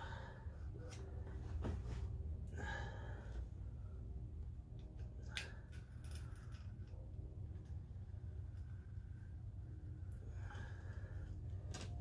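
Quiet workshop room tone with a steady low hum, the soft breathing of a person bent close to the microphone, and a few light clicks of handling a small plastic applicator bottle.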